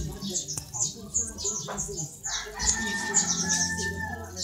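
A domestic cat chewing a dead bird: repeated crisp crunches of feathers and bone, with a couple of sharper clicks.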